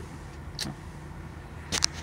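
Low steady hum of an idling truck heard inside the cab. A single tap comes about a third of the way in, and a quick cluster of louder clicks near the end, from the phone being handled.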